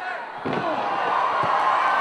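A wrestler crashing onto the wrestling ring's canvas with a heavy thud about half a second in, then a lighter thud about a second later. Voices shout loudly over it.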